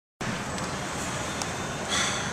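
Steady road and engine noise heard inside the cabin of a moving vehicle, an even rush with a low hum underneath.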